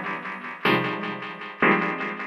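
House music playing over the club sound system: keyboard chords struck about once a second, each fading before the next, with almost no bass underneath.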